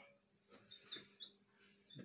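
Faint squeaks and scratches of a marker writing on a whiteboard, in a few short strokes.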